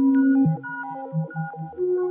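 Modular synthesizer music: held tones stepping from note to note. A loud low note drops away about half a second in, and short low notes then pulse about four times a second under higher notes.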